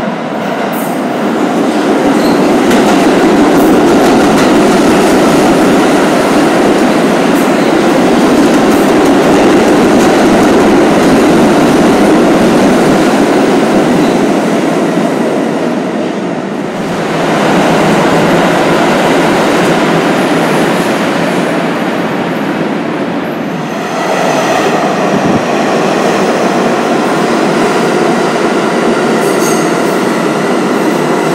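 New York City subway trains running through an underground station: a loud, steady rumble of wheels on rail that eases briefly twice and swells back. Thin high tones, wheel squeal or motor whine, come in over the last few seconds.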